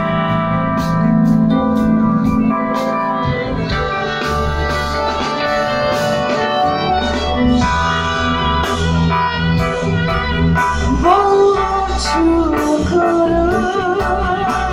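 Live band playing: guitars and keyboard organ chords over drums, with a voice singing a wavering melody from about eleven seconds in.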